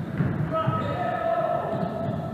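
Basketball dribbled on a hardwood gym floor: a few echoing bounces about half a second apart, with players' voices over them.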